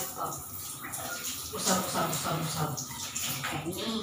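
Water running and splashing in a tiled shower, a steady hiss, with a woman's voice talking over it at intervals.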